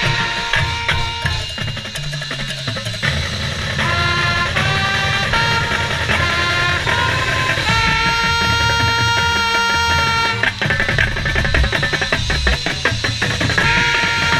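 Marching band playing: brass over drums and mallet percussion, with a trumpet close at hand. Short punched notes give way to long held chords about eight seconds in, then a busier drum-driven passage.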